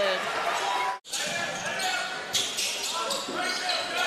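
Basketball game sound in an indoor gym: a ball bouncing and court noise, with voices in the hall. The sound cuts out for an instant about a second in, then resumes.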